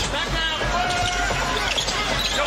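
Basketball being dribbled on a hardwood court over arena crowd noise, with a steady held tone sounding for about a second in the middle.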